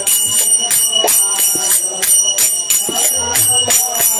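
Devotional kirtan music: small hand cymbals (karatals) ringing in a steady beat of about three strokes a second, with low drum strokes beneath.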